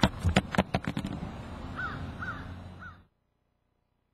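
A quick run of sharp knocks in the first second, then a bird calling three times over outdoor background noise. The sound cuts off about three seconds in.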